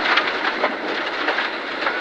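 Cabin noise of a rally car braking hard on a gravel road: steady tyre and road roar, with loose stones rattling and ticking against the underbody.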